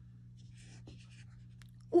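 Felt-tip marker scratching on notebook paper in a few short, faint strokes, over a steady low hum. A voice says "ooh" right at the end.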